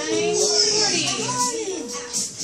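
Children's voices in a classroom, talking and calling over one another.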